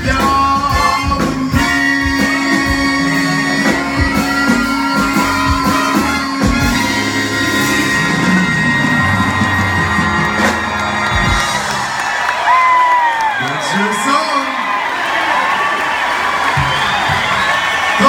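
Live band with saxophones, trombone and keyboards playing the end of a song's instrumental outro, with drum hits and then a long held chord. The band drops out about eleven seconds in, and the crowd cheers and whoops.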